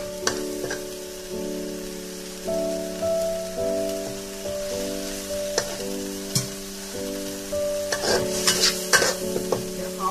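Red chili paste sizzling in a steel wok while a metal spatula stirs and scrapes it, with a cluster of sharper scrapes about eight seconds in. Background music with long held notes plays underneath.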